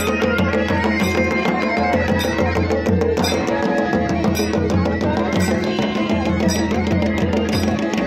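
Pahadi wedding band music for a Choliya dance: traditional drums beaten in a dense rhythm under a melody with a steady drone.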